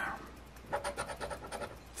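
Metal coin scratching the latex coating off a scratch-off lottery ticket, a quick run of short back-and-forth strokes, about eight a second, starting under a second in.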